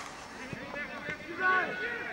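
Shouts from players and spectators at a Gaelic football match, faint and distant at first, with a short raised call about a second and a half in.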